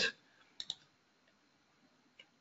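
A few quick computer mouse clicks close together, about half a second in, as the drawing boundary is adjusted on screen; otherwise the recording is nearly silent.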